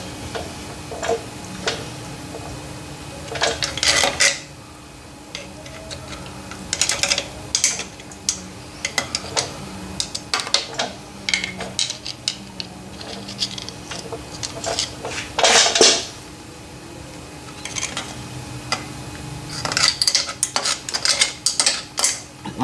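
A screwdriver poking and scraping inside a metal shaper gearbox, clinking irregularly against the gears and cast housing as it digs out lumps of solid grease. Denser bursts of scraping come about four seconds in, near the middle and towards the end, over a faint steady hum.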